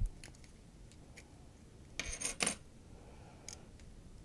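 Faint clicks and taps of small parts being handled on a Blackmagic Pocket Cinema Camera's removed touchscreen assembly as its buttons are taken off, with a few sharper clicks about two seconds in.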